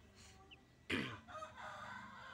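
A rooster crowing in the background: one long held call that starts abruptly about a second in. Just before it comes a single faint chick peep.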